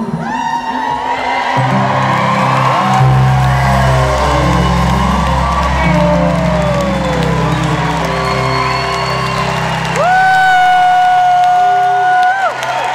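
Live band holding out the closing chords of a rock song, with long sustained low notes, while the crowd cheers and gives sliding whoops. A long, steady high note rings out over it near the end.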